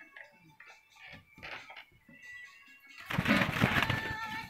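Faint background music with steady tones, then, about three seconds in, a sudden loud burst of rustling and flapping from a rooster's wings as it is grabbed and held.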